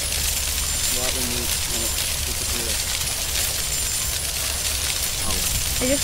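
Wind rumbling steadily on a phone microphone outdoors, with a short spoken sound from a man about a second in and speech starting again near the end.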